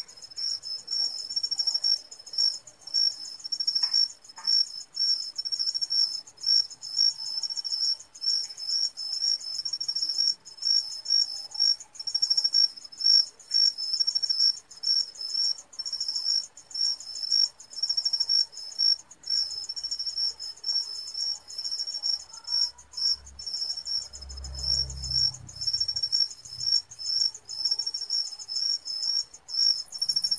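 Crickets chirping steadily: a high, rapidly pulsed trill broken by short regular gaps, with a fainter lower chirp beneath it. A brief low rumble comes late on.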